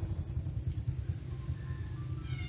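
A low, steady rumble with a continuous high-pitched whine over it, and a few faint short tones near the end.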